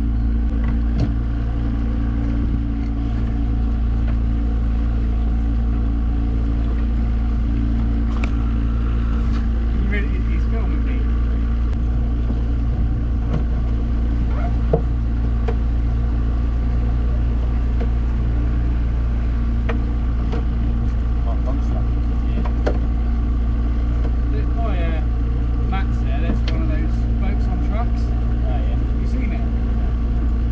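Outboard motor of a small open boat running steadily under way, a constant drone that does not rise or fall.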